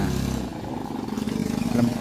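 A small engine running steadily, with a short word spoken near the end.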